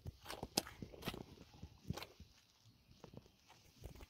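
Faint footsteps on pavement: irregular scuffs and light clicks, a few a second.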